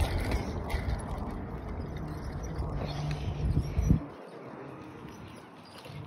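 A bicycle being ridden over pavement: steady low rolling and handling noise, which drops to a quieter hush about four seconds in.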